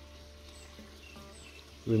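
Quiet outdoor background with a low steady hum and a few faint, short high chirps.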